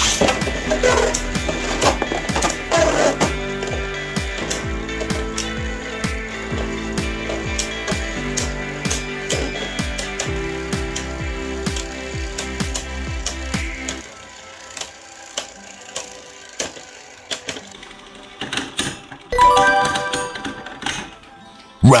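Background music over the clicks and clacks of two Beyblade spinning tops colliding in a clear plastic stadium. The music stops about two-thirds of the way through, leaving the scattered clicks of the tops, then a short louder burst of sound near the end.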